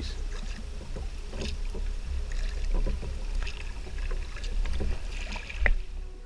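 Kayak being paddled on calm water: the double-bladed paddle dipping and dripping in scattered light splashes over a steady low rumble, with one sharp knock near the end.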